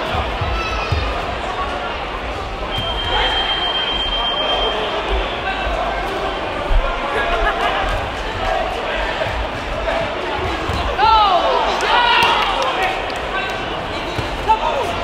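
Sports-hall crowd hubbub and shouting from coaches and spectators during a kickboxing bout, with dull thuds of gloved punches and kicks landing. A steady high whistle-like tone sounds for about two seconds about three seconds in, and the shouting grows loudest about eleven seconds in.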